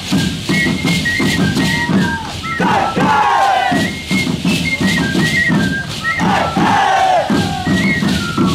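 Andean folk dance music: a high flute melody over a drum, with the dancers' shacapa seed-pod leg rattles shaking in time to their steps. Twice, about two and a half seconds in and again about six seconds in, the dancers let out a long falling shout.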